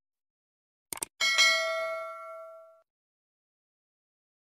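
A quick double click sound effect, then a bright notification-bell ding that rings out and fades over about a second and a half.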